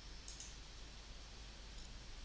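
A faint computer mouse click, two quick ticks close together, over a steady low hiss.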